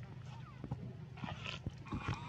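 Infant macaque crying in short, high, wavering calls, a few in quick succession, as older juveniles pull it around, over a steady low hum.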